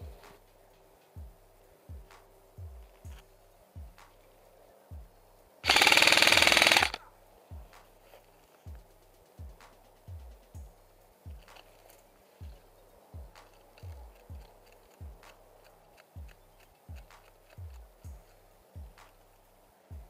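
A burst of full-auto fire from an airsoft electric gun, about a second long and loud, about six seconds in. Under it runs background music with a steady low bass beat.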